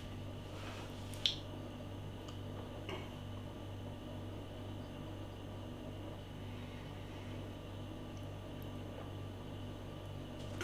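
Quiet room tone with a steady low hum, broken by a single short click a little over a second in and a fainter one about three seconds in.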